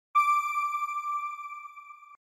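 A single electronic chime tone of a logo sting, struck once just after the start and slowly fading away.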